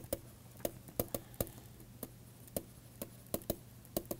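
Stylus tip tapping and clicking on a pen tablet while words are handwritten: about a dozen short, sharp clicks at an irregular pace.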